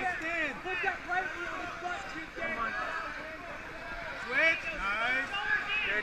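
Several voices shouting and calling out over each other, with a louder shout about four and a half seconds in.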